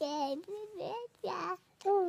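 Baby vocalizing: short high-pitched coos and squeals broken by breathy gasps, with a brief pause near the end before she starts again.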